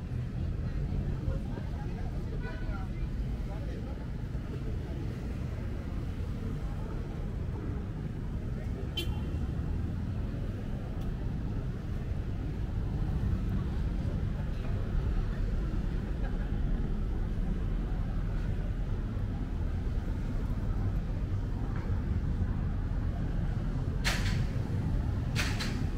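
Urban street ambience: a steady low rumble of traffic with people's voices talking in the background. A single sharp click sounds about nine seconds in, and the rumble grows a little louder about halfway through.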